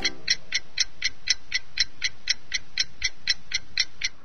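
Clock ticking sound effect, an even run of sharp ticks at about four a second, counting down the time allowed to answer.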